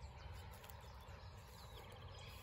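Faint birds chirping: scattered short, high calls over quiet outdoor ambience.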